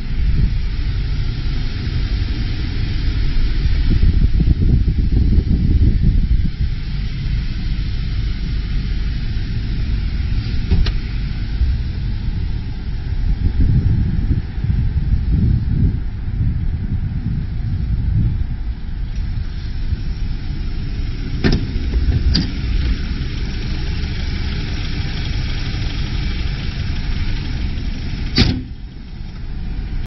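Gusty low rumble on the handheld microphone, typical of wind buffeting, with sharp knocks about eleven seconds in, two close together a little past twenty seconds, and one near the end.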